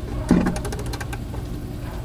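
Click-type torque wrench ratcheting as it tightens the drain plug into a plastic oil pan toward 8 Nm: a quick run of sharp clicks about half a second in, over a steady low hum.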